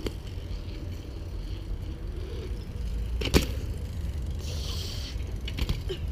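BMX bikes rolling over a concrete skate park, with a steady low rumble. There is one sharp clack about three seconds in and a brief hiss near five seconds.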